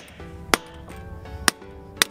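Hammer blows on a steel bolt set in a socket, driving a wheel lock nut out of the 12-point socket it was hammered onto: a few sharp metallic hits about a second apart, over background music.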